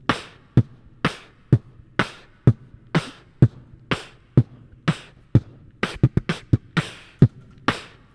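Beatboxed drum beat into a cupped microphone: a simple kick, snare, kick, snare pattern at about two hits a second. A quick fill of rapid hits comes about six seconds in, closing the phrase.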